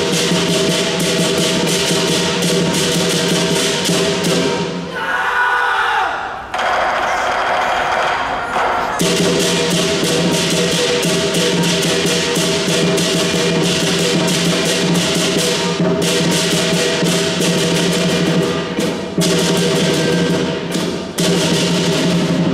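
Southern lion dance percussion band: a large lion drum beaten steadily, with cymbals clashing rapidly and a gong ringing. About five seconds in, the cymbal clashes drop out for a few seconds before the full band comes back in.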